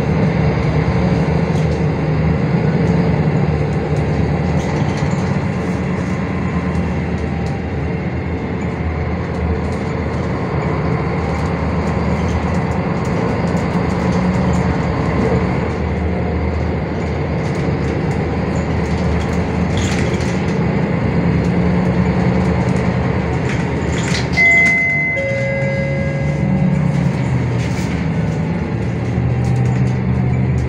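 Cabin sound of a MAN NL323F city bus under way: its MAN D2066 LUH-32 diesel engine running with its pitch rising and falling over steady road noise. About 24 seconds in, a short electronic chime sounds.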